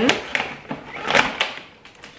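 Christmas baubles knocking and clattering against a clear plastic tube container as they are packed back in by hand: a string of light, irregular knocks, the sharpest about a second in, dying away near the end.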